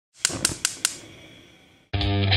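Gas stove burner's spark igniter clicking four times in quick succession, each click ringing briefly, followed by a fading hiss as the burner lights.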